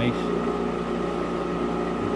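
Balzers HLT-160 helium leak detector running, with its Edwards ESDP-30 dry scroll pump: a steady machine hum made of several steady tones over a soft rush.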